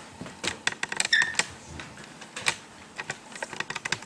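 Handling noise of a handheld microphone as it is passed from one person to another: a run of irregular clicks and light knocks.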